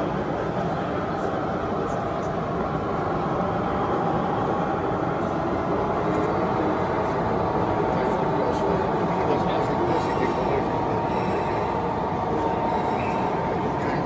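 Model diesel locomotive running along a layout's track with a train of freight wagons, a steady rail-running sound over the background chatter of an exhibition hall.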